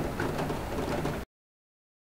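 Steady background hiss of the room and recording, with no voices, cut off abruptly to dead silence a little over a second in.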